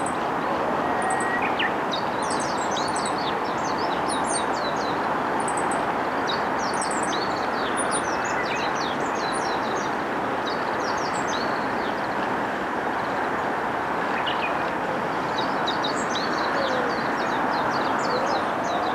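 Many small birds chirping in quick, high calls throughout, over a steady hum of distant road traffic.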